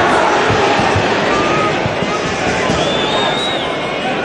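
Football stadium crowd noise, loud and steady, with a few faint thin whistles over it.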